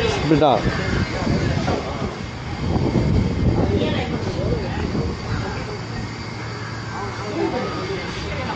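Indistinct chatter of several people mixed with the steady hum of a vehicle engine, the hum most noticeable in the second half.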